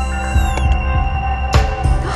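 Animation soundtrack: a low, throbbing drone under a few held high tones, with a short falling glide, then a single sharp hit about one and a half seconds in that rings on.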